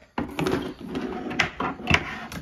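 Handling noise of a plastic cleanup sluice being moved about on a tabletop: rustling and scraping with a few sharp knocks, the loudest near the end.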